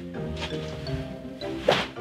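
Background music, with one sharp whack about three-quarters of the way through as a Stinger tactical whip strikes a shirt-covered back.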